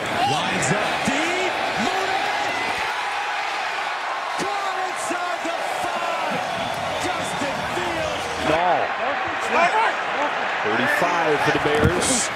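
Football TV broadcast sound: an even stadium crowd noise with indistinct commentator voices over it. The sound changes about eight and a half seconds in, where the picture cuts to another game.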